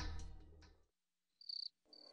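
Background music fading away, then a cricket chirping in short, high, pulsing trills, starting about one and a half seconds in and repeating.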